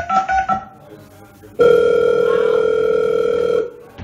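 A plucked melody in the performance mix ends. After a short pause, a single steady telephone ring tone sounds for about two seconds and cuts off, played as a sound effect over the club's sound system.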